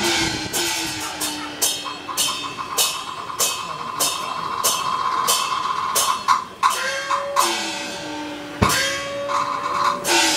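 Taiwanese opera accompaniment: percussion with regular cymbal clashes about every half second, under a melody instrument holding a long high note through the first half, then lower sustained notes.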